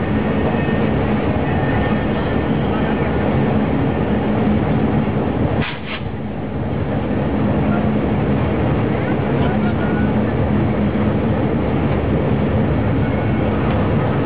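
Diesel locomotive engine running steadily, heard from inside the cab, with voices from the crowd outside. The noise drops briefly about six seconds in.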